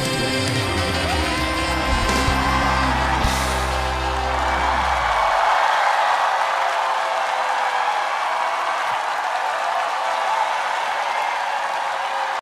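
A live band's song ends about five seconds in, its bass cutting out, and a studio audience applauds and cheers over a lingering held note.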